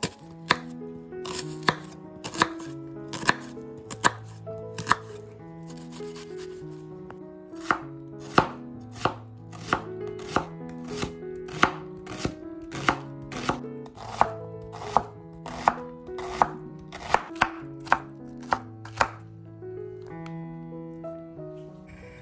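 Chef's knife dicing an onion on a bamboo cutting board: sharp knocks of the blade on the board, about one and a half a second, with a pause about five seconds in, stopping shortly before the end. Soft background music plays underneath.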